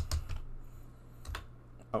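Computer keyboard keys clicking a few times, struck hard enough that the tab key sticks.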